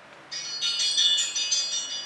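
A high-pitched chiming melody of quick notes starts about a third of a second in and keeps going.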